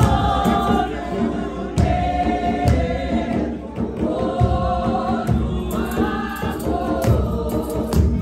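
A church choir of women and men singing a Xhosa hymn together in harmony, led by a woman singing into a microphone, over a steady rhythmic percussive beat.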